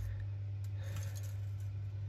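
A steady low hum with faint rustles and light ticks of thin wire being handled.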